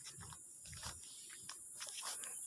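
Faint outdoor ambience: a steady high-pitched hiss with scattered short clicks and a few soft low thumps.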